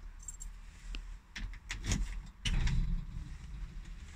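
Scattered light clicks, rattles and a few soft knocks from handling inside a small car's cabin, with the engine off.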